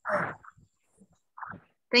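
Voices on a video call: the tail end of a spoken word, a brief short sound about a second and a half in, then a voice beginning 'thank you' near the end.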